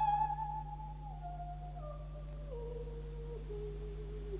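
Operatic soprano voice: a loud high note with vibrato breaks off at the start, then a soft descending phrase, stepping down note by note. A steady low hum runs underneath.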